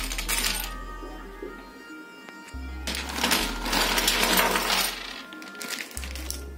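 Miniature metal, ceramic and plastic toy kitchenware clattering and clinking as handfuls are dropped onto a heap of more of the same on a wooden table. There is a short clatter at the start and a longer, louder one from about three to five seconds in.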